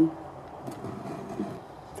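Low room tone with a few faint handling sounds, likely a hand turning a ceramic-mosaic clay flowerpot; a spoken word ends at the very start.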